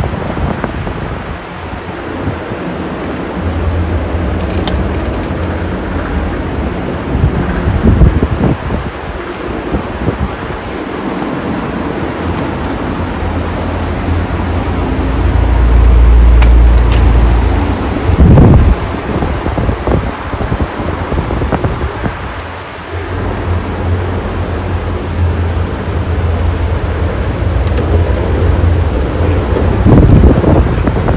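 Running electric stand fans blowing air into the microphone: a loud, rough low rumble of wind buffeting that swells when close to a fan, loudest about halfway through. A couple of short bumps are heard along the way.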